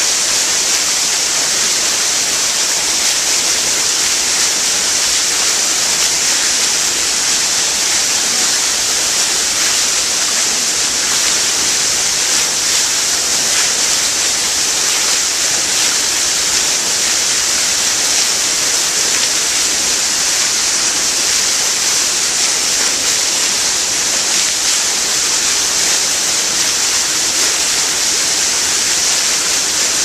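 Water sheeting off the rim of a large stone fountain basin and splashing into the pool below: a loud, steady rush that does not change.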